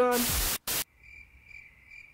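Crickets chirping in a steady pulsing trill, starting about a second in: the stock "awkward silence" cricket sound effect laid over a deadpan pause.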